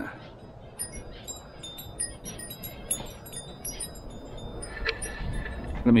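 Wind chimes tinkling irregularly, many brief high ringing notes at different pitches, over a low rumble of wind.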